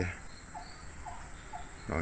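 Insects chirping faintly, a run of short chirps a fraction of a second apart.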